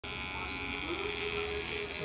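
Electric hair clippers buzzing steadily.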